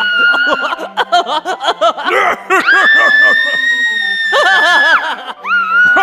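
Recorded soundtrack of an animated Halloween tug-of-war prop, played through its speaker. Cackling clown laughter runs under a girl's high-pitched screams, with one long held scream starting about two and a half seconds in and another near the end.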